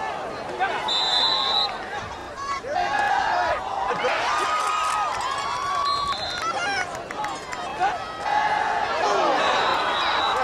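Many voices shouting and cheering at once from players and spectators during a football play, with some long held yells.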